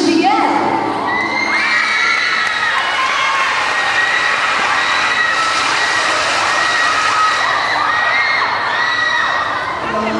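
Live audience cheering and screaming: many high-pitched voices shouting over one another, steady and loud, easing a little near the end.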